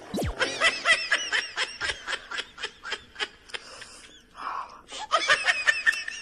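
High-pitched giggling, a quick run of short laughs about four or five a second, breaking off briefly past the middle and starting again near the end.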